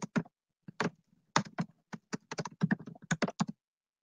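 Typing on a computer keyboard: a run of irregular keystrokes, quickest in the second half, stopping about half a second before the end.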